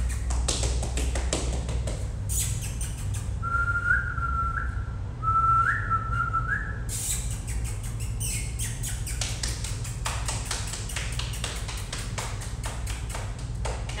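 Short whistled notes, each sliding up at the end, from a person whistling to call a dog back, about a third of the way in. Around them run many quick clicks or taps, coming thick and fast in the second half, over a steady low hum.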